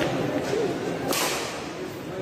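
Badminton racket striking a shuttlecock in a rally: two sharp hits, one at the start and one about a second later, over background crowd chatter.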